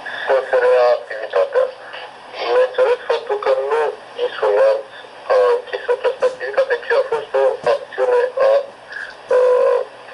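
A man speaking over a telephone line, in phrases with short pauses; the voice sounds thin and narrow, with no low end, as phone audio does.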